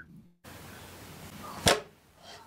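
Faint hiss with a single sharp click about a second and a half in.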